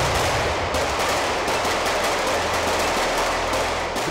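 Sustained rapid gunfire from several automatic weapons firing together on a shooting range, the shots running into one continuous stream.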